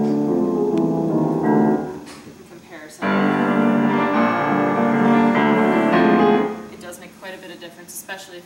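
A 1987 Yamaha U10BL upright piano is played in two short passages with a pause between them. The first sounds duller, with little top. The second is brighter and a little louder, comparing the piano's sound with and without its felt-strip practice mute.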